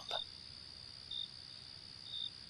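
Crickets at night: a steady high trill with a short, higher chirp about once a second.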